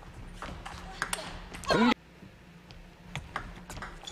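Table tennis ball clicking off rackets and the table in a few quick sharp strikes during a rally. About halfway in, a short loud voice cuts in, the loudest sound, then only a few faint ticks follow.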